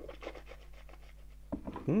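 A man's mouth sounds just after a sip of strong cask-strength whisky: faint breathing out through the mouth and small lip smacks, then a short hummed 'hm' near the end.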